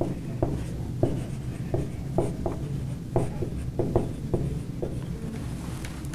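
Dry-erase marker writing on a whiteboard: a run of short squeaks and taps from the felt tip as a word is written, stopping about a second before the end, over a steady low room hum.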